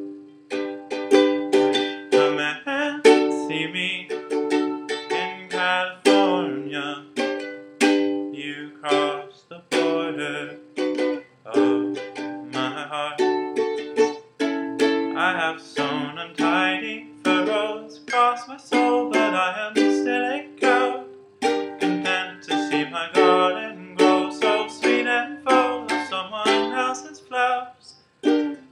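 Ukulele played on its own in an instrumental passage: a continuous flow of plucked notes and chords, each with a sharp attack and a short ringing tail.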